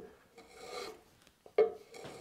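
Small hand plane shaving a chamfer along the edge of a wooden board in short scraping strokes. The loudest sound is a sharp knock about one and a half seconds in, at the start of the second stroke.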